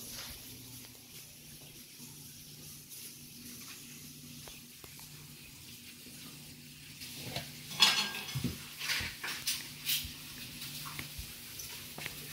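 Light clicks and knocks of small objects being handled and set down on a tabletop, in a cluster from about halfway in, the loudest a sharp knock near two-thirds of the way through, over a faint steady low hum.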